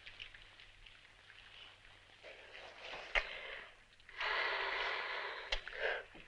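A couple breathing close together in bed. A soft click comes about three seconds in, then a long breathy sigh lasts nearly two seconds.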